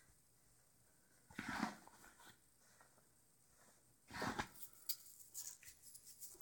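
A quiet room with two short breathing noises, then a few faint clicks near the end as the wire-wrapped juggling balls start being thrown and caught.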